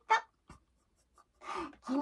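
A woman's voice: the end of a spoken phrase, a short pause with a faint click, then a brief voiced sound as she starts speaking again.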